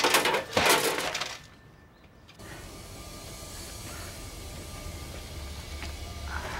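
Two loud crashes with a shattering, breaking character in the first second or so, cutting off suddenly, followed by a low steady hum.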